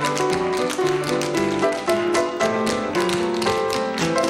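Tap dancers' shoes clicking in fast rhythmic runs over live piano music.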